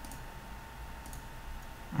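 A few faint computer clicks over a steady background hiss, with a faint steady high tone underneath.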